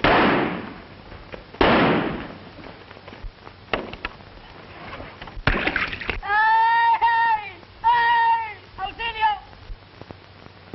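Two gunshots about a second and a half apart, each with a long echoing tail, then a few fainter cracks. Near the end, a high-pitched voice cries out three times.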